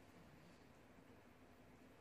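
Near silence: room tone in a pause between sentences of speech.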